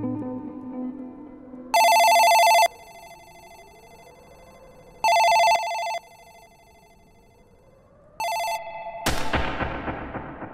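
A desk telephone rings three times, each ring a trilling bell of about a second. The third ring is cut off by a sudden loud boom with a long fading tail.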